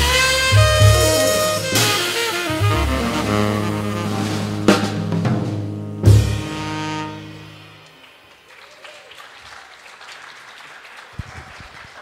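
Jazz band of two saxophones, upright bass and drum kit playing the closing bars of a tune: the saxes and a held low bass note under several drum and cymbal hits, the last chord ringing out and fading away about eight seconds in.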